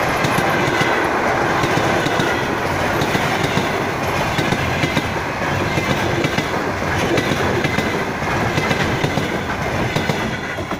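Passenger coaches of a Russian Railways train rolling past at close range, their wheels clattering steadily over the rail joints. The sound begins to fall away at the very end as the last coach goes by.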